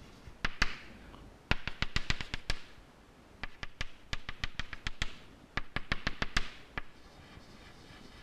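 Chalk tapping on a blackboard as dashed lines are drawn: quick runs of sharp clicks, one dash per click, in several bursts with short pauses between them.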